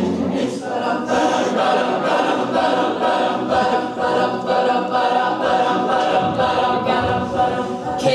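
Mixed-voice a cappella group singing held chords in harmony, with a steady beat running under them.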